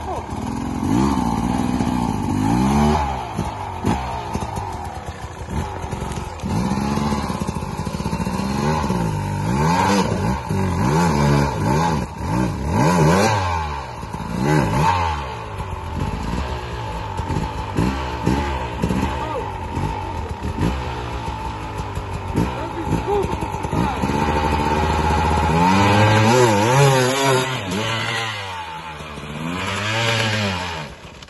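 Enduro dirt bike engine revving up and down over and over under load, its pitch rising and falling every second or so. The revving is heaviest a little before the end.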